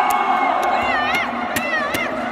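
Spectators in an indoor sports hall cheering and shouting during a handball match, with several high-pitched wavering yells rising above the crowd and a few sharp knocks.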